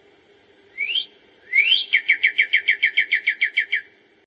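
A songbird singing: a rising whistle about a second in, then another rising whistle that runs into a rapid string of short, downslurred notes, about seven a second, stopping just before the end.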